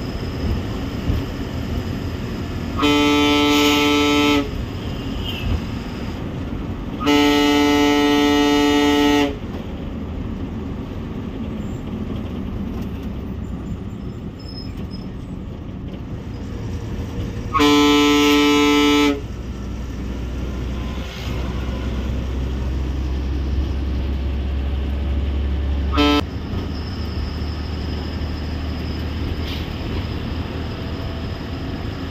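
A bus horn sounds three long blasts of one and a half to two seconds each, then one short toot near the end. Under it is the steady drone of the Ashok Leyland bus engine and road noise, heard from inside the cab.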